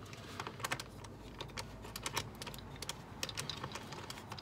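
Cross-head screwdriver turning out a screw from the air filter housing lid, making a run of small, irregular clicks and ticks.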